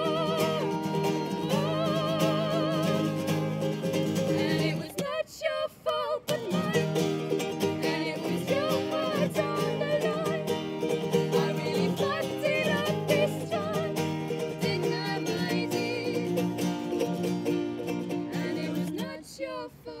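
Acoustic folk song: a strummed steel-string acoustic guitar and a ukulele, with two women's voices singing held, wavering notes together. The music stops suddenly about five seconds in and comes back in full about a second later.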